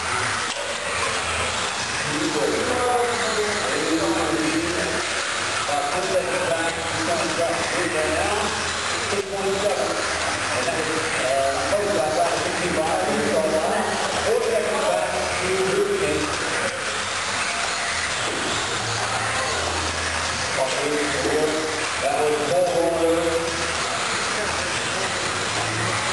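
Electric 1/10-scale 2WD buggies with 17.5-turn brushless motors racing on an indoor dirt track: a steady hissing, whirring haze of motors and tyres. Indistinct talking runs underneath throughout.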